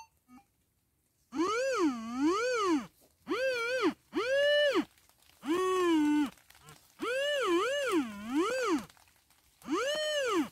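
Metal detector target tone: a whistle-like tone that rises and falls in pitch each time the search coil passes over a buried metal target. It sounds in repeated bursts with short gaps, some passes rising and falling two or three times.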